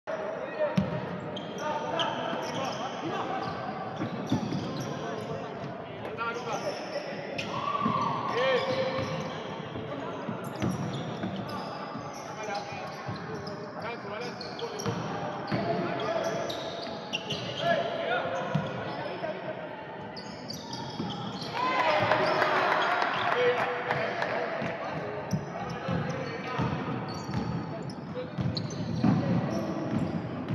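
A basketball being dribbled and bouncing on a wooden gym court during play, with indistinct voices of players and onlookers echoing in the hall. About two-thirds of the way through the voices get louder for a few seconds.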